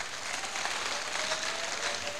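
Audience applauding, a steady patter of clapping heard at a moderate level. A faint thin steady tone joins about halfway through.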